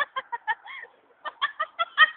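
A person's voice making a quick string of short, high-pitched clucking sounds, with a brief pause about a second in.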